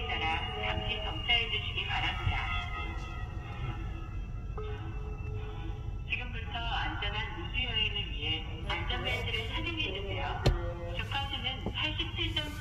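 A voice talking over background music, with a steady low rumble underneath, likely the car's running engine and road noise. One sharp click sounds about ten and a half seconds in.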